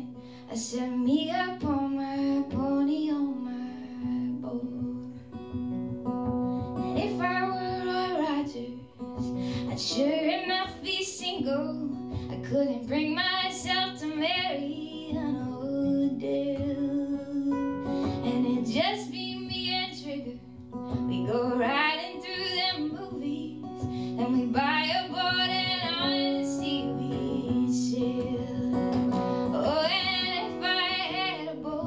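A woman singing solo with her own acoustic guitar accompaniment: sung phrases every few seconds, with short breaks between them, over steadily ringing guitar chords.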